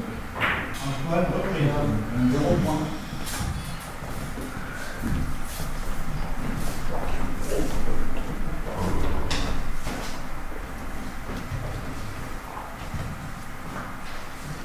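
Billiard hall background: low talk from people around the tables and scattered sharp clacks of carom billiard balls striking, about half a dozen over the span.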